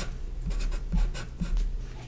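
Marker pen writing numbers on paper: a run of short scratchy strokes.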